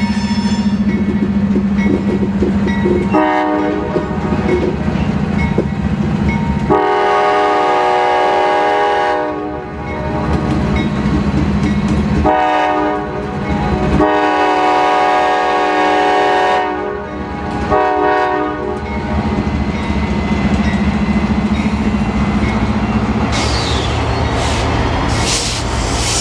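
Diesel locomotive of a Norfolk Southern work train sounding its air horn in a series of long blasts as it approaches, with the steady drone of its engine between the blasts.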